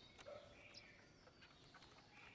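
Faint chirps and short calls of small songbirds, with a few soft clicks.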